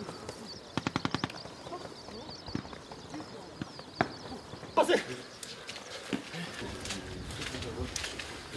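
A short burst of about seven rapid sharp cracks about a second in, fitting distant automatic rifle fire, followed by a few single sharp knocks. Birds chirp throughout.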